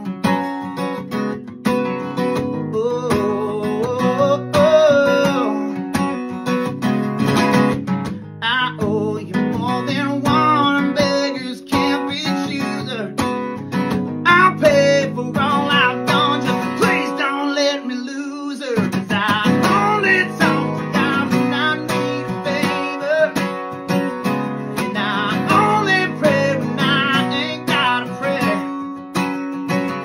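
Acoustic guitar strummed in a steady rhythm, with a man singing over it. The low chords drop out briefly about 17 seconds in.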